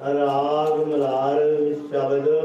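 A man chanting a devotional mantra in long, drawn-out notes, with a short breath near the end.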